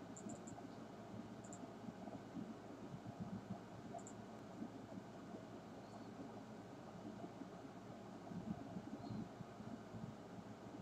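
Faint steady background noise, a low hiss and rumble, with a few brief high ticks near the start and again around four seconds in.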